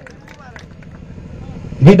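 A brief pause in a man's speech over an outdoor loudspeaker, leaving faint background noise with a few distant voices. The amplified voice starts again loudly near the end.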